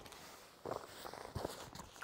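Faint rustling and a few light clicks, starting about half a second in, as hands rummage through a soft carrying case and handle paper cards.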